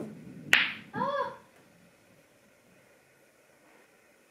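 A single sharp clack of the rolling cue ball striking another pool ball about half a second in, followed by a brief vocal exclamation.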